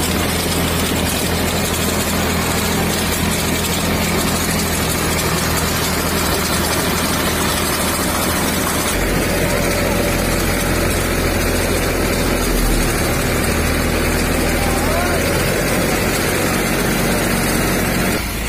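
Engine of a motor-driven disinfectant sprayer running steadily, with the hiss of spray from the hose. The engine note shifts about nine seconds in.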